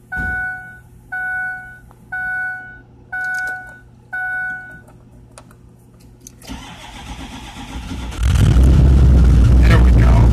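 A Ford F-250's dash warning chime dings five times, about once a second, heard from inside the cab. After a few clicks, the 6.0-litre Power Stroke V8 turbodiesel cranks for under two seconds and catches on a cold start, about eight seconds in, settling into a loud, steady idle.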